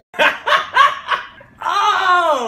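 A man laughing hard: a quick run of short ha-ha bursts, then, about a second and a half in, a long drawn-out cry of laughter whose pitch slides steadily downward.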